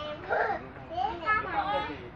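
Young children's high-pitched voices calling and chattering in two bursts, over a steady low rumble from the moving passenger train.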